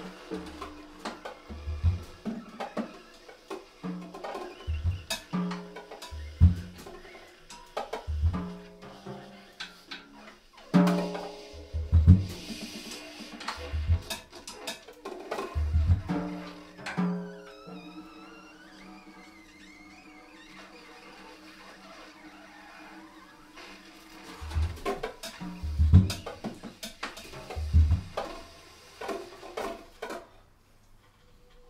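Free-improvised jazz for drum kit, baritone saxophone and alto saxophone: irregular bass drum, tom and snare strikes under long held saxophone notes. About two-thirds of the way through the drums drop out, leaving the saxophones with a high wavering line. The drums then come back in, and all the music stops at the very end.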